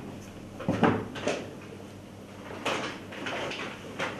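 Tabletop handling noises: a few short knocks and rustles as scissors cut ribbon and a satin ribbon is tied around a tin can, the loudest knock about a second in.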